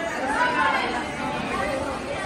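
Chatter of several voices talking at once: students passing through a classroom doorway.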